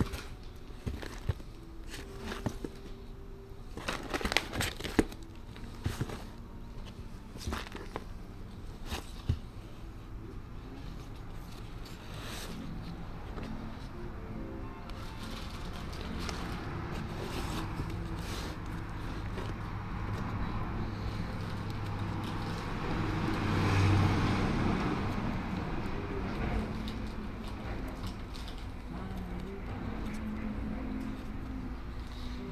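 Vinyl LP jackets in plastic sleeves being flipped through in a cardboard crate: a quick run of clicks and knocks as the records slap and slide against each other, busiest in the first third. Later a low rumble swells up, loudest about two-thirds of the way in, and eases off again.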